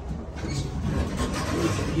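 Glass passenger elevator car in motion: a steady low hum with a rushing noise that builds from about half a second in.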